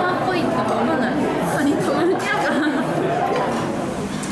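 Conversation with the chatter of other diners in a busy restaurant dining room.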